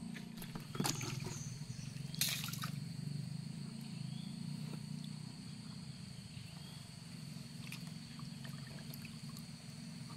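A shallow muddy stream trickling faintly under a low steady hum, with two short clicks about one and two seconds in.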